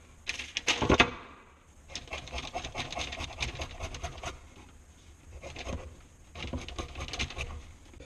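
A wooden skiving board knocked down onto the table with a clatter about a second in, then a knife shaving the curved edge of a leather heel counter on the board to taper it: two long runs of rapid, dense scraping strokes.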